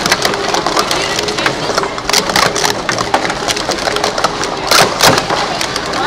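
Plastic sport-stacking cups clattering as they are rapidly stacked up and brought down, a dense run of light clicks and knocks, with a louder clatter about five seconds in.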